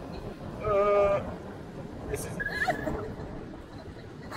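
A wicker toboggan's wooden runners scraping steadily down a tarmac road, with one drawn-out, wavering vocal cry about a second in and a shorter cry about halfway through.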